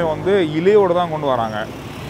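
A man talking, with street traffic in the background.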